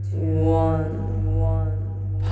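A woman's voice intoning one long, drawn-out syllable in a slow, chant-like manner, over a steady low drone.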